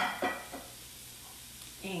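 Riced cauliflower and hominy frying in olive oil in a sauté pan, a low steady sizzle. Two sharp knocks right at the start are the loudest sounds.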